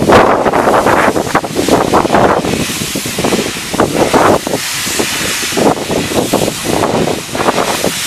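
Wind buffeting the microphone in uneven gusts over a train of passenger coaches rolling past, with a hiss of steam about three to six seconds in.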